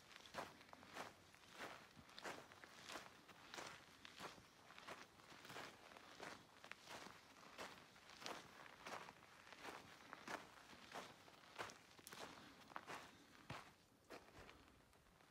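Faint footsteps of a hiker walking on a dirt and stone track, at a steady pace of about three steps every two seconds.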